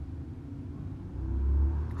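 A low rumble that swells in the second half.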